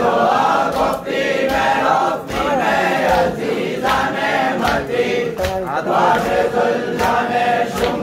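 Men's voices chanting a Muharram noha (mourning lament) together in a loud unison chorus. Sharp beats keep time about every 0.7 seconds.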